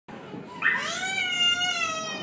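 A young child's long, high-pitched wailing cry that starts about half a second in, rises slightly and then slowly sags in pitch.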